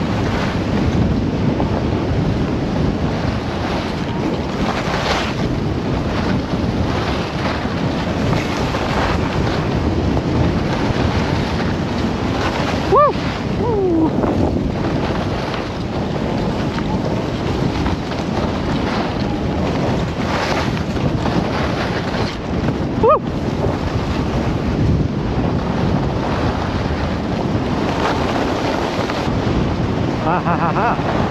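Wind rushing over the microphone together with the hiss and scrape of skis sliding over groomed, tracked snow during a downhill run. Two short squeaking tones stand out, about ten seconds apart.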